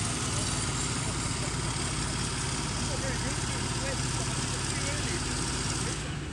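Engine of construction machinery running steadily as a low hum, with faint distant voices over it.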